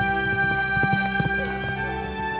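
A horse galloping, a quick run of hoofbeats that is densest about a second in, heard over sustained orchestral score music.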